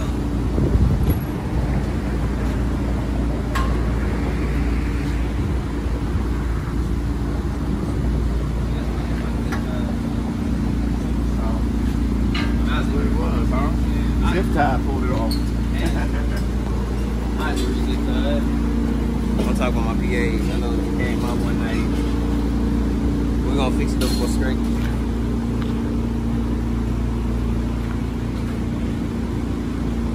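Ford F-150 idling through a true-dual exhaust with high-flow catalytic converters, a steady low drone that holds throughout.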